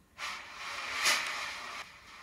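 Hissing noise played back by a Nakamichi CD-700II car CD player as a track starts. It rises suddenly, swells to a peak about a second in, then eases off.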